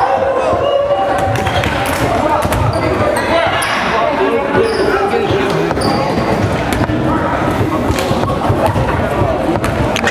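A basketball dribbling on a hardwood gym floor amid steady chatter and shouts from the crowd and players, echoing in the gymnasium.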